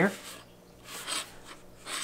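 A plastic ruler rubbing briefly across paper as it is shifted into a new position, a short scratchy sound about a second in.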